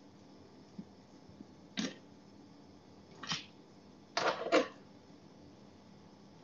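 Knife scraping avocado flesh out of its skin over a plate: four short scrapes, the last two close together a little past the middle.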